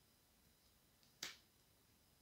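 A Lenormand card being laid down on the spread: one brief, sharp snap about a second in, otherwise near silence.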